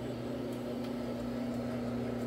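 A 175 rpm rotary floor machine running steadily as its pad scrubs thick carpet. It gives a low motor hum of unchanging pitch.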